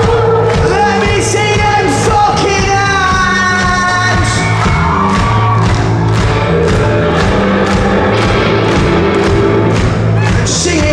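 Live rock band playing loud, with electric guitars, a steady drum beat and a man singing, heard from within the audience in a large hall.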